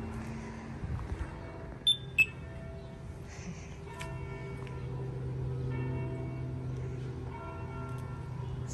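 Church bells ringing: overlapping sustained tones, struck afresh a few times in the second half. Two short, loud, high beeps sound about two seconds in.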